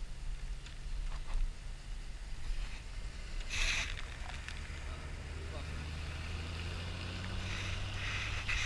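Traffic on a wet road: a low, steady engine rumble that grows stronger in the second half, with a brief louder rush about three and a half seconds in.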